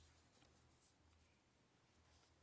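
Near silence: room tone, with a couple of faint ticks in the first second.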